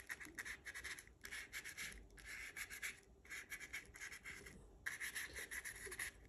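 Small paintbrush dabbing and stroking paint onto cardboard: faint, quick scratchy bristle strokes in short runs separated by brief pauses.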